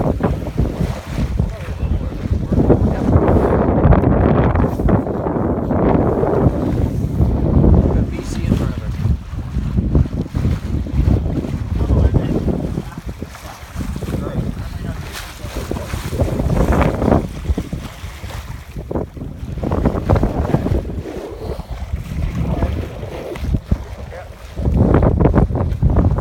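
Wind buffeting the microphone in gusts, with water rushing past the hull of a sailboat under way. It is loudest in the first several seconds and then comes in surges.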